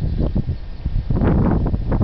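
Wind buffeting the camera microphone in a loud, uneven low rumble, with brighter gusty bursts near the start and again past the middle.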